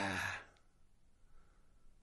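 A man's breathy, drawn-out exhaled 'nah', like a sigh, lasting about half a second, followed by near silence.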